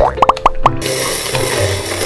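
Four quick cartoon-style 'bloop' sound effects in a row, each rising in pitch, over light background music, followed by a steady hiss.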